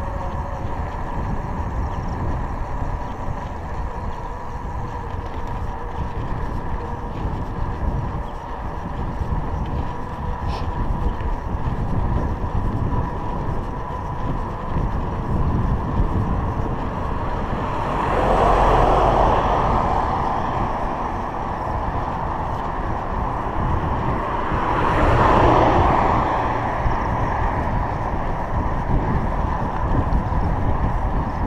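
Road noise of bicycle riding filmed on a GoPro Hero 3: a steady rumble of wind on the microphone and tyres on asphalt. Twice a vehicle swells up and fades away as it passes, once a little past the middle and again later.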